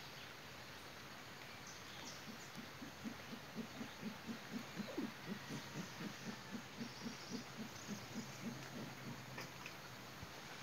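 Mantled howler monkey giving a long series of low, rhythmic grunts, about three a second, starting about two seconds in and loudest around the middle.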